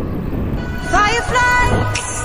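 Background song with a sung vocal that comes in about a second in, over a steady low rumble.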